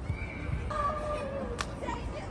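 A young child's high-pitched, drawn-out vocal cry that falls slightly in pitch, with a single sharp tap near the end, over a low wind rumble.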